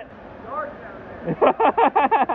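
A steady rush of water under the waterfall, then a man speaking for the second half.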